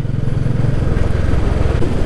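Motorcycle engine running steadily while riding, a continuous low, rapid pulsing note with road and wind noise above it.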